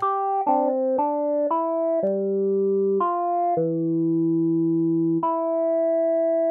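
Bitwig Polysynth software synthesizer playing a run of overlapping pitched notes, about two a second at first, then longer held notes. Each note opens with a quick brightening that settles back: the filter envelope pushes the resonant cutoff up seven semitones, a fifth, and as it relaxes the emphasis moves from the third harmonic down to the first.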